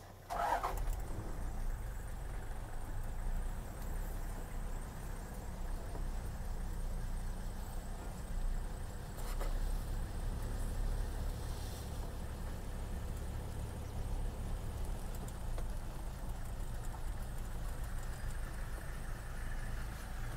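Safari vehicle's engine running at low revs, a steady low rumble.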